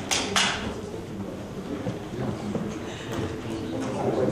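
Background murmur of people talking and moving about as a meeting breaks up, with two short bursts of noise right at the start.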